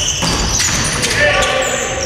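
Live basketball in a gym: a basketball bouncing on the hardwood court under voices calling out from players and the bench, with the echo of a large hall.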